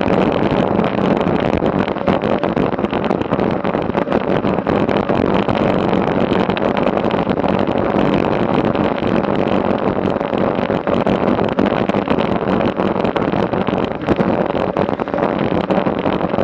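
Steady rush of wind over a bike-mounted action camera's microphone at about 26 mph, mixed with the rolling noise of road bike tyres on asphalt.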